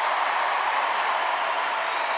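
Stadium crowd cheering a try, a steady even wash of noise with no single voice standing out.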